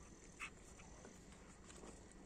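Near silence: a faint background with a soft click about half a second in and a few fainter ticks near the end.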